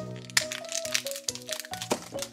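A crinkly blind-bag toy packet crackling and crumpling as it is torn open by hand, with sharp crackles throughout and a loud one near the end, over background music.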